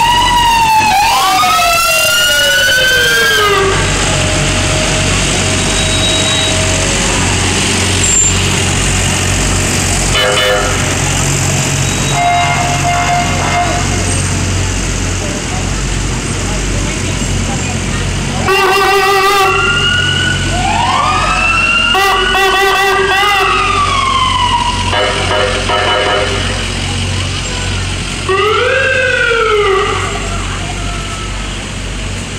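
Emergency vehicle sirens wailing in long rising and falling sweeps, several overlapping at once, with short bursts of a fast warbling yelp in between, over the steady low rumble of passing truck engines.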